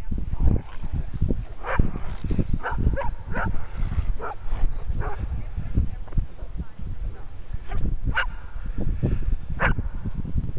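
Dogs giving short barks and yips, several in quick succession in the first half and two sharper ones near the end, over a steady low rumble.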